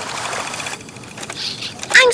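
Cartoon sound effect of a remote-controlled toy sailboat's small electric motor whirring as it moves across a pond, with a rush of water early on.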